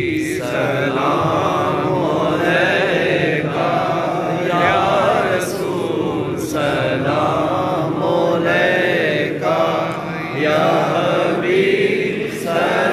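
Men's voices in devotional chanting, sung in long phrases that rise and fall in pitch and run on with hardly a break.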